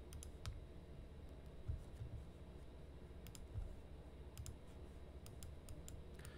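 Faint, scattered clicks of a computer mouse being worked, more of them in the last couple of seconds, with a few soft low thumps in between.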